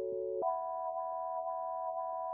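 Teenage Engineering OP-Z synthesizer holding a chord of steady, pure tones, which steps up to a higher chord about half a second in.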